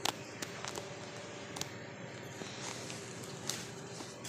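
Faint background hiss broken by a few soft clicks and taps, typical of a phone being handled and moved about while recording.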